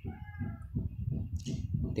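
A faint cat meow.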